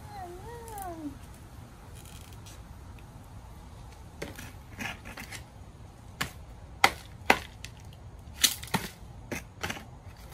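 A short meow-like call that rises and then falls, about a second long. Then a series of sharp cracks and snaps as strips of bamboo are split and pulled off a cooked bamboo tube of sticky rice.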